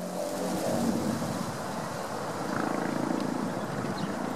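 Outdoor wind noise: a steady rush with a low rumble from wind on the microphone. A faint steady hum sits underneath.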